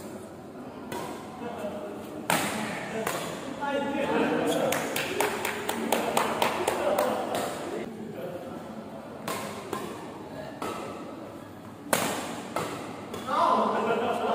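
Badminton rally: sharp smacks of rackets striking a shuttlecock at irregular intervals, several in quick succession around the middle and a loud one near the end, with players' voices in between.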